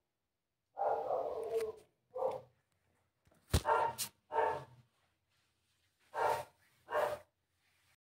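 A dog barking in short bursts, about six times, with one sharp click a little after the middle.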